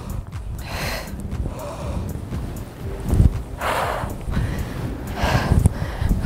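A woman's heavy exhalations of exertion, three or four forceful breaths a second or two apart, while she does dumbbell squats and lunges, with low thumps of wind or movement on the microphone.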